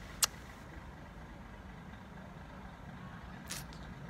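Distant road traffic heard as a steady low rumble. A sharp click comes just after the start, and a short hiss about three and a half seconds in.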